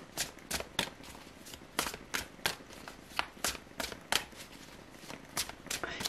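A tarot deck being shuffled hand to hand, with small packets of cards dropped from one hand onto the deck in the other. It makes a run of short, irregular card slaps and flicks, a few a second.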